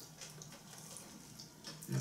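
Faint, wet mouth sounds of people biting and chewing pizza, with small scattered clicks over a low steady hum.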